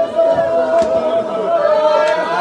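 A group of men chanting a noha together in unison, holding one long note. A single sharp slap from the chest-beating (matam) comes about a second in.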